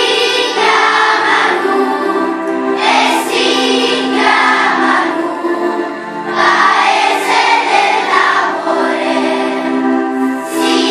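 Large children's choir singing a song together in long held phrases, with brief dips between phrases about two and a half and six seconds in.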